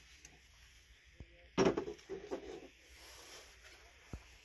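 A sharp knock about one and a half seconds in, then a brief run of softer clatters, as a hollow plastic character mug is handled against a wooden shelf.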